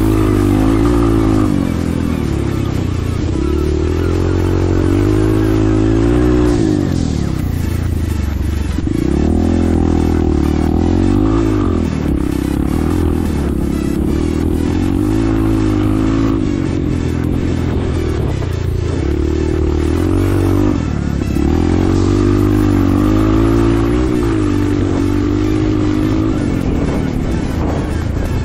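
Dirt motorcycle engine under way, revving up and dropping back again and again as the throttle is opened and closed.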